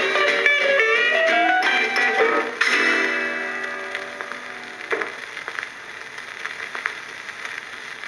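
A 1950s rock and roll single with electric guitar playing from a vinyl 45 on a portable record player's built-in speaker. It ends on a held chord that fades out about five seconds in, followed by scattered clicks and crackle from the record's surface.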